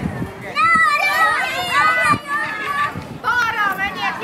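Several children's voices calling out at once, high-pitched and overlapping, getting louder about half a second in.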